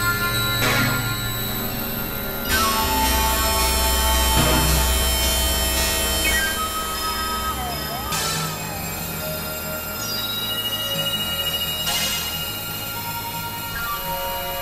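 Experimental electronic synthesizer music: layered held tones over low drones, the chord shifting every couple of seconds, with a few brief noisy swishes and a short wavering glide in pitch about halfway through.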